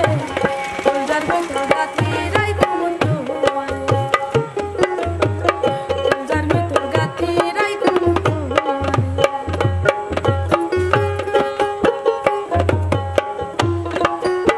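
Bangladeshi folk music on dhol and dotara: the dhol beats a steady rhythm of low thumps while the dotara's plucked strings carry the melody.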